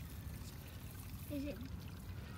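Faint low rumble of the microphone being handled as a hand works in streamside grass, with a brief hummed 'mm' from a man's voice about a second and a half in.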